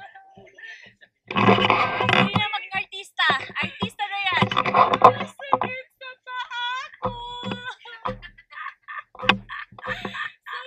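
Women's voices talking and laughing in short bursts, with two loud stretches of laughter or exclaiming in the first half.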